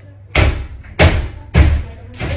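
Three loud bangs about half a second apart, each echoing briefly after it strikes.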